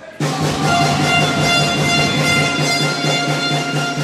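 Basketball arena horn sounding one loud, steady blast that starts suddenly and holds a single unchanging tone for about three and a half seconds.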